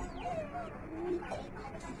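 Birds calling in the background: a few short low calls that bend up and down in pitch, with some brief higher chirps.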